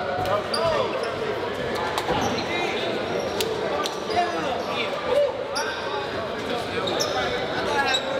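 Indoor basketball gym ambience: a ball bouncing on the hardwood court, sneakers squeaking in short high chirps, and the chatter of players and spectators echoing in the hall.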